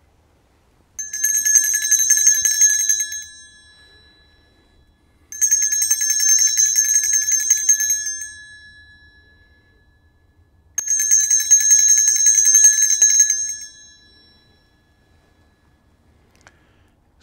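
Altar bell rung three times at the elevation of the chalice during the consecration. Each ring is a rapid shaking of several bell tones lasting about two seconds, then dying away, with a few seconds' pause between rings.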